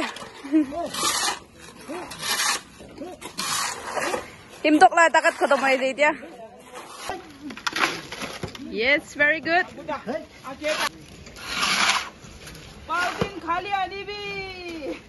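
Steel shovels scraping and slapping through wet concrete mix on the ground, a stroke every second or two, with voices talking in between.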